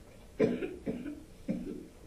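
A person coughing: three short coughs about half a second apart.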